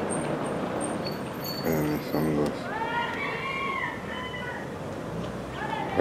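An animal's call: a high cry that rises and then falls in pitch, about three seconds in, after a shorter, lower voice-like sound about two seconds in.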